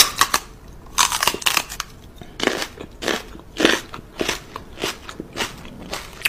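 Crisp crunching as something is chewed, one crunch about every half second.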